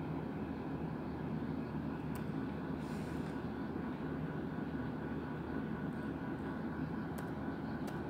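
Steady low room hum, with a few faint clicks of laptop keys as a command is typed.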